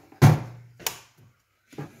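A loud thump with a short low hum under it, then a sharp click about half a second later: an electrical plug pushed into a wall socket and the appliance switched on.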